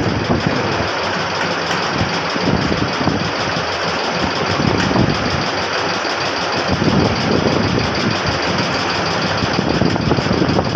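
Hydraulic pump of a compression testing machine running steadily as it presses a concrete paver block under a rising load.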